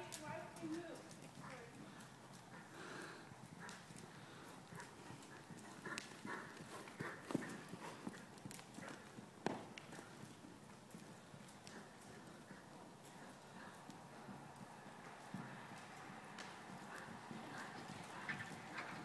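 Hoofbeats of a ridden horse moving over the soft dirt footing of an indoor arena: faint, irregular footfalls with a few sharper knocks.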